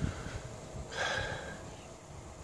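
A man breathing out audibly once, about a second in, between phrases, over faint low thumps.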